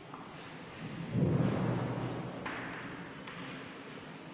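A dull thud about a second in, trailing off into a fading low rumble. After it come a couple of faint scratchy strokes of chalk writing on a blackboard.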